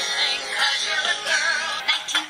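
A musical theatre song: a singing voice with wavering, vibrato-like held notes over full instrumental backing.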